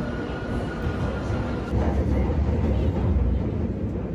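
London Underground Northern line train running into the platform with a thin, steady whine over its rumble. About two seconds in, this gives way to the louder low rumble heard inside a moving carriage.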